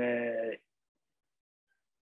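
A man's voice holding one level, drawn-out vowel, a hesitation sound, for about half a second at the start, then dead silence.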